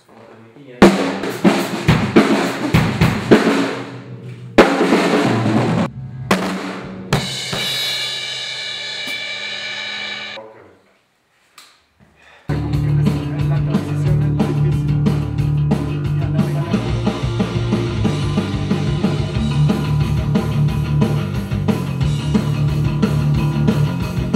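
Acoustic drum kit played live: a run of snare, kick and cymbal hits, then a held ringing note that cuts off, a second or so of silence, and then a rock track with a heavy bass line and drums that starts suddenly and carries on steadily.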